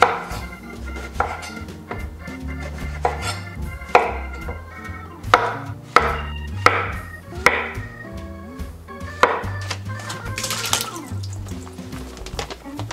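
Chef's knife slicing through eggplant and zucchini and striking a wooden cutting board, about nine separate chops at uneven gaps of roughly a second.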